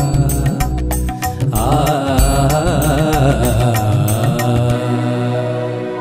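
Instrumental ending of a Telugu Christian devotional song: a drum beat with a wavering melody line over it. The beat stops about three-quarters of the way through, leaving a held chord that starts to fade out.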